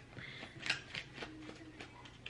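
Tarot cards being handled and turned over: several light, sharp card snaps and rustles.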